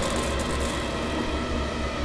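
A low, steady rumbling drone under an even hiss: a film's ambient sound-design bed.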